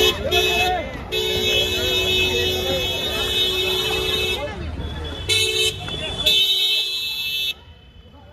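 Car horn honking: a short toot, then one long blast of about three seconds, then two shorter toots, over the chatter of a crowd. The sound drops away sharply near the end.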